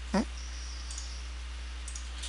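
Steady low electrical hum and faint hiss under a pause in the narration, broken just after the start by one brief voiced sound, a short 'uh'-like noise from a man's voice.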